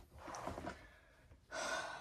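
A person breathing close to the microphone: a soft breath about half a second in, then a short, sharper breath near the end.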